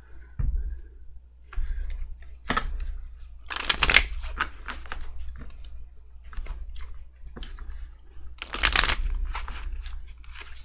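A tarot deck being shuffled by hand: soft clicks and rustling of the cards, with two louder rushes of cards, a few seconds in and again near the end.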